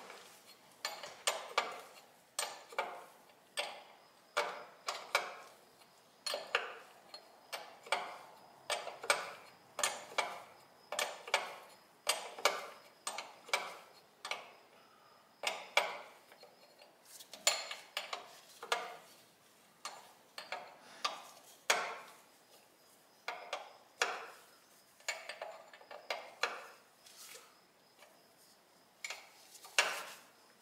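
A steel wrench clinking against a brass fuel line fitting as it is worked tight, in short metallic clinks about one or two a second, some in quick pairs.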